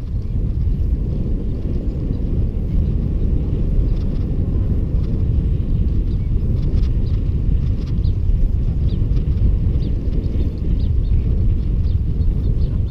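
Wind rushing over the microphone of a bicycle-mounted camera while riding, a steady low rumble, with faint short high sounds scattered through it.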